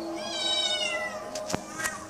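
A kitten meowing once: a single drawn-out meow of about a second that falls in pitch. Two sharp clicks follow near the end.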